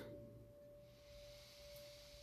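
Near silence, with one faint, steady held tone of a single pitch, like a sustained tuning-fork note, and a faint hiss.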